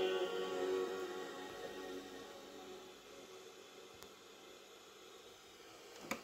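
Music playing through the loudspeaker of a JVC RC-550 stereo radio-cassette boombox, fading away over about three seconds to near silence, with a faint click about four seconds in.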